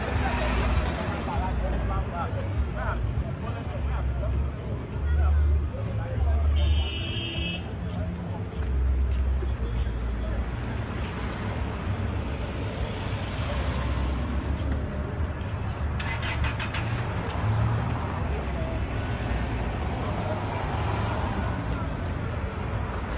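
Busy street traffic: car engines and tyres passing close by, with the chatter of passers-by. A short high-pitched horn toot sounds about seven seconds in.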